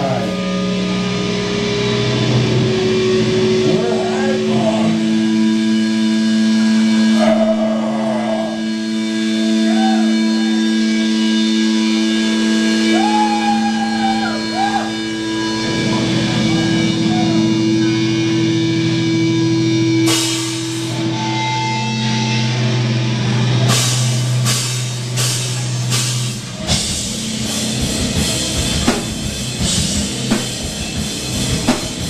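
Live rock band playing: long held electric guitar notes ring out over the first two-thirds, then drum hits come in and grow busier toward the end.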